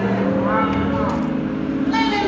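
A woman's voice through a microphone over sustained, held musical chords, as in church music backing a preacher.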